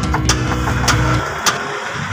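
A steady engine hum with sharp metallic clicks of a wrench working the leaf-spring shackle bolt. The hum cuts off suddenly just over a second in.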